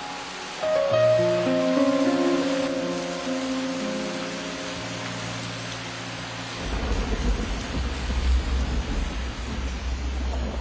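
Slow music of long held chords, giving way about two-thirds of the way in to a steady hiss of rain with a low rumble underneath.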